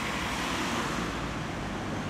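Steady road traffic noise, an even hiss and rumble with no distinct events.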